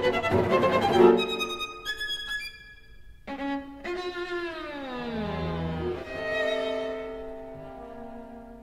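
Violin, viola and cello of a string trio playing twelve-tone chamber music. A rapid, busy passage breaks off about a second in into high held notes. After a brief pause comes a held chord with a long downward slide in pitch, then sustained notes that fade.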